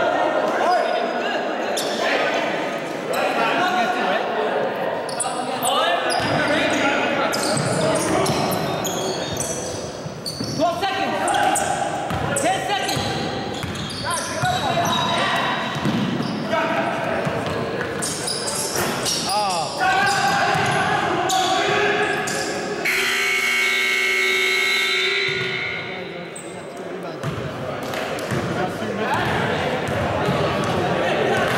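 Basketball bouncing and being dribbled on a hardwood gym floor, with indistinct shouts from players, echoing in a large gymnasium. Partway through, a steady tone lasting about three seconds.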